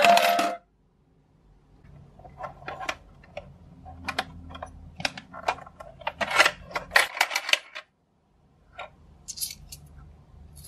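A toy coin bank's electronic tune cutting off half a second in, then metal coins clinking and clattering with plastic handling knocks as Japanese 100-yen coins are tipped out of the bank's plastic body and handled, the clinks coming thickest a little past the middle.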